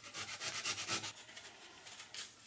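Kitchen knife paring the skin off an apple wedge on a wooden cutting board: a quick run of short scraping strokes, loudest in the first second, then fainter.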